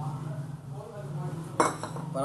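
A small steel bowl clinks once with a short metallic ring about one and a half seconds in, over a steady low hum.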